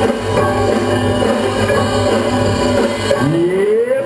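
Music played for the dancer, with held pitched tones over a low steady pulse. Near the end, a pitched sound slides upward.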